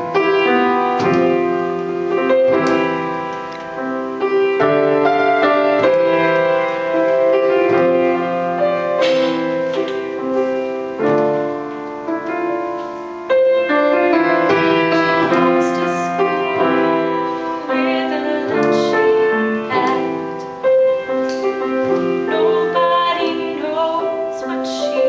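Grand piano playing the slow introduction of a ballad, sustained chords changing every second or so. A woman's singing voice comes in near the end.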